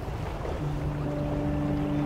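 Small boat under way on calm water: a steady noise of motor, wind and water, with a low steady hum joining about half a second in.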